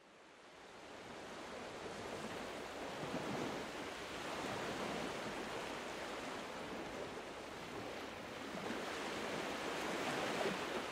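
Steady rushing water noise like surf, laid under the closing card. It fades in over the first couple of seconds and then holds even.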